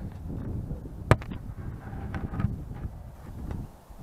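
A cover being put onto the box holding a caught bee swarm to shut the bees in: rubbing and handling noise with a few knocks, the loudest a sharp knock about a second in. Low rumble of wind or handling on the microphone runs under it.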